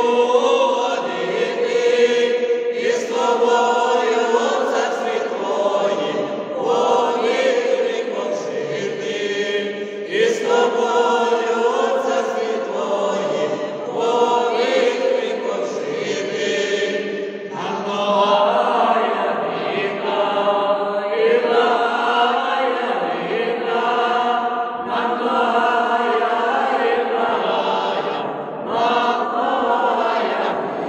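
A mixed vocal ensemble of women's and men's voices singing a Ukrainian Christmas carol (koliadka) unaccompanied, in phrases of three to four seconds with short breaths between them.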